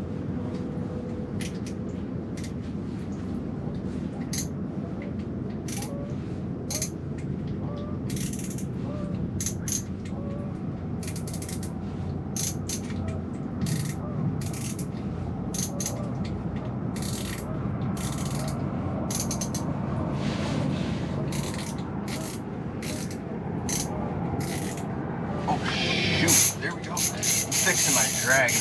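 Fishing reel's drag clicking: scattered single clicks as the drag is being adjusted, then, about two seconds before the end, a louder rapid run of clicks as a fish pulls line off the loosely set drag.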